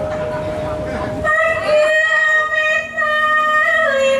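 A sinden, a female Javanese singer, holds one long high note into a microphone. The note starts about a second in, stays steady for about two and a half seconds, and dips slightly in pitch near the end.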